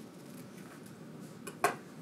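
Scissors cutting construction paper in faint snips, then one sharp click near the end.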